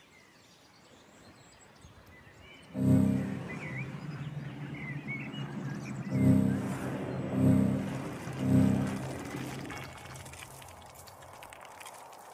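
Soundtrack music: after a near-quiet start, a deep low chord comes in suddenly about three seconds in and swells three more times about a second apart, with birds chirping over it. It fades toward the end.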